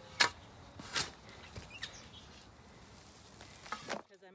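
A long-handled shovel digging in dry garden soil: a sharp scrape or strike of the blade near the start and another about a second later, then fainter scrapes. Faint bird chirps in the background.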